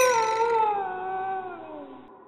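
A long howl, loudest at the start, that slides slowly down in pitch and fades out near the end.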